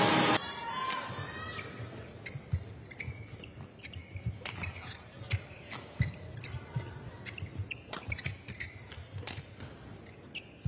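Badminton rally: rackets strike the shuttlecock in sharp, irregular cracks, with court shoes squeaking and thudding on the mat between shots. A loud burst of crowd and commentary noise cuts off suddenly in the first half-second.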